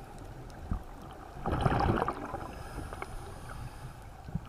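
A scuba diver's exhaled bubbles rushing out of the regulator in one loud burst about one and a half seconds in, over the steady low rumble of water heard through an underwater camera housing. A single short knock comes shortly before the burst.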